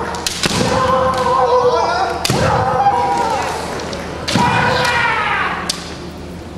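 Kendo exchanges: sharp cracks of bamboo shinai strikes and stamping footwork on a wooden floor, each burst followed by a long kiai shout that falls in pitch at the end. Three such bursts: just after the start, just after two seconds and just after four seconds, with a last sharp crack near the end.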